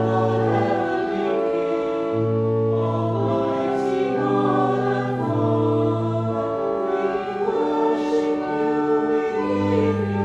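Choir singing slow church music in long held chords over low sustained bass notes, with a few sung consonants hissing through.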